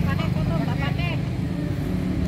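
Faint chatter of several people over a steady low hum.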